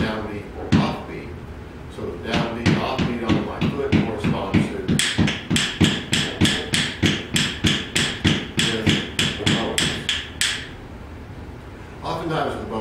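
Heel-and-toe foot taps on the floor keeping a steady beat of about three taps a second. About five seconds in, wooden bones (yellow pine) join in with sharp, ringing clacks in time with the feet, stopping about ten and a half seconds in.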